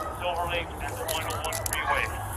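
Indistinct voices, with a quick run of sharp crackles in the second half over a steady low rumble.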